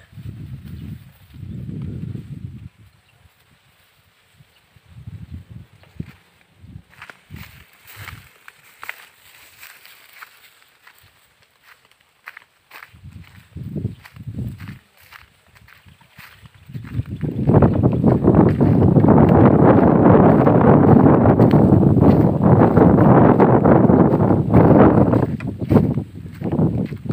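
Footsteps on a dirt path with rustling of a bundle of cut grass being carried. About seventeen seconds in, a loud, steady rustling noise takes over and lasts to the end.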